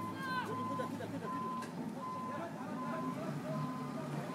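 A machine's backup alarm beeping evenly, a bit more than one beep a second, over the low running of a wheel loader's engine.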